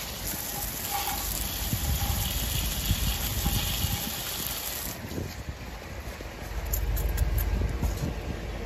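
Garden hose spraying water onto a car's alloy wheel and the pavement around it, rinsing off spray-on cleaner and loosened brake dust. The spray hiss is strongest for the first five seconds, then eases.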